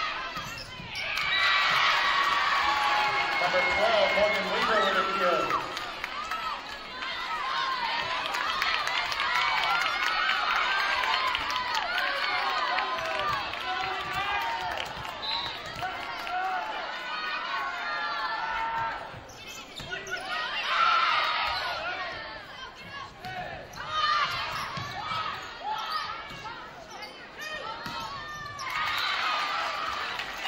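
Gym sound of a volleyball rally: the ball being struck and sneakers squeaking on the hardwood court, with players and spectators shouting throughout. It is loudest in the first few seconds and again about two-thirds of the way in.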